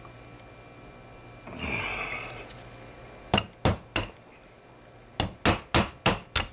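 Hammer tapping a nail used as a punch against a pin seized by corrosion: two sets of three sharp metallic taps about a second apart, after a short rustle of handling. The pin isn't budging.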